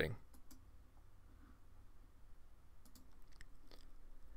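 A few faint, soft clicks of a computer mouse over quiet room tone.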